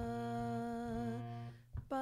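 A voice holding a long sung note in a kirtan shabad over a harmonium playing the same pitch, tapering off about one and a half seconds in. A short gap follows, then the next sung note starts just before the end.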